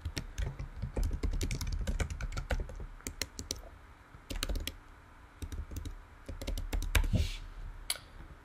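Typing on a computer keyboard: rapid keystroke clicks in quick runs, with a short lull a little past the middle.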